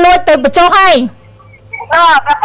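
A woman's loud, high-pitched voice, held on a fairly steady pitch for about a second and then dropping in pitch before a short pause.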